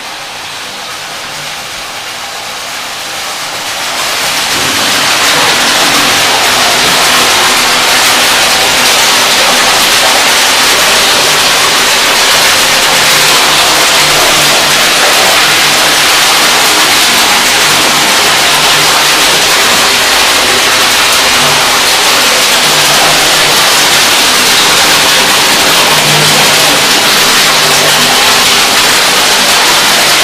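Water rushing through the pipes of a water collection chamber, a loud steady rush that swells about four seconds in and then holds, with a faint low hum under it.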